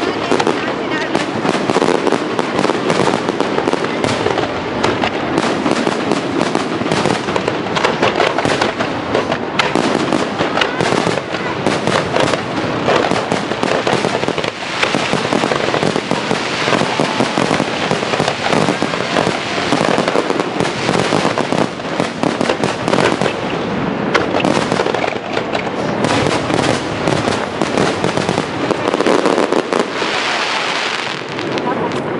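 A fireworks display at full tilt: a dense, unbroken run of shells bursting, with bangs and crackling overlapping throughout.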